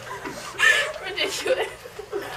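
A group of girls laughing and giggling together, the loudest burst of laughter about half a second in.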